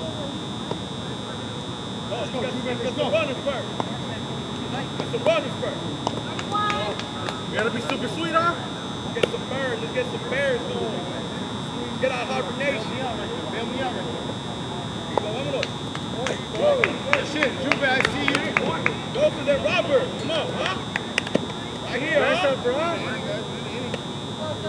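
Indistinct voices of softball players and onlookers calling and chatting, over a steady high-pitched whine. A run of short sharp clicks comes about two-thirds of the way in.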